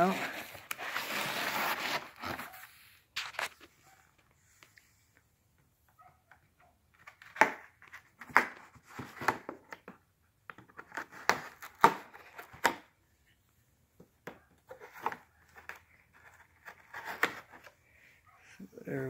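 Small knife slicing through the tape and cardboard of a shipping box, a continuous rasping cut for the first two seconds. Scattered crinkles and taps follow as the cardboard box and its packing are handled.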